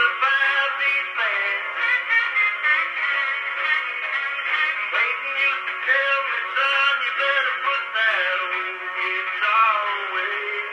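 A country song recording played back acoustically on a cylinder phonograph through its large flower horn. The music sounds thin and boxy, with no deep bass and little top end.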